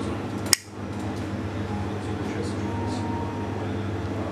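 Steady low hum and room noise, with one sharp click about half a second in.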